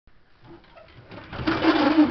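A wooden closet door being pulled open: a scraping rumble with a low steady tone in it that builds up about a second in and is loudest near the end.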